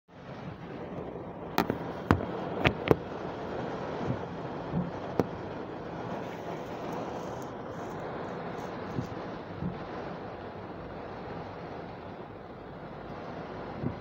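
Steady rushing noise inside a car cabin, with a few sharp clicks and knocks in the first five seconds and a couple of soft low knocks later.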